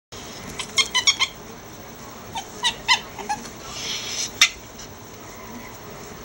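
Ferrets playing in a laundry pile, giving short high chirping calls in two quick clusters, followed by a rustle of cloth and one sharp click.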